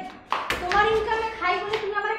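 A single sharp hand smack about half a second in, followed by a voice speaking in an argument.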